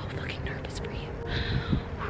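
A woman whispering, breathy and close to the microphone.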